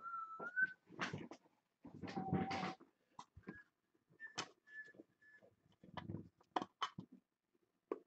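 Hands working a clear plastic magnetic card holder (One-Touch): scattered clicks, knocks and rustles of the plastic case, the sharpest clicks in the last two seconds. A few thin high whistle-like tones come through as well, a rising one at the very start and short ones a few seconds in.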